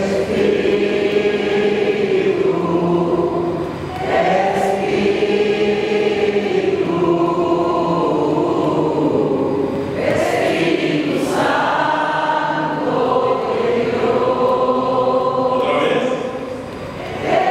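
A gathering of many voices singing together in long, drawn-out phrases of a few seconds each, led by voices on microphones.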